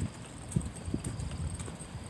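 Footsteps of a person walking on a concrete path, heard as dull low thuds about two a second.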